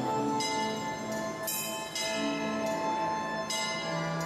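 A bell on a mechanical kinetic clock sculpture, struck several times in a row and ringing on between strikes, over music that accompanies the clock's performance.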